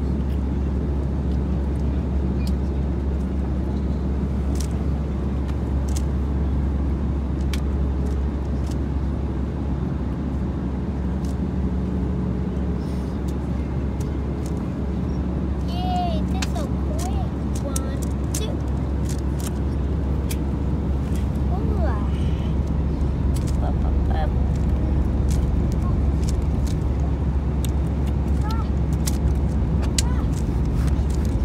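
Steady low drone of an airliner cabin in flight, with scattered light clicks of a 3x3 Rubik's cube being turned.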